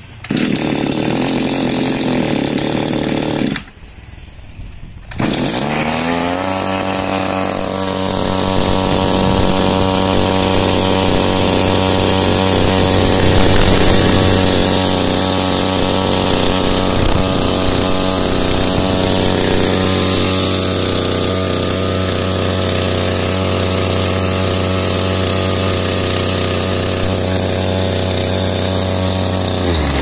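Small air-cooled two-stroke petrol engine of a power sprayer running, then stopping after about three and a half seconds. It starts again about five seconds in, rises quickly in pitch and settles into steady running.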